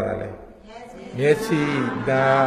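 Speech only: a man's voice lecturing slowly into a microphone, drawing out a low syllable at the start, then going on after a short lull.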